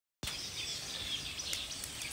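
Outdoor ambience: birds chirping over steady background noise, starting abruptly a moment in.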